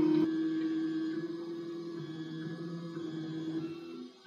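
The Linespace display's 3D-printer head drawing raised lines, its stepper motors running with a steady whine that slowly fades away.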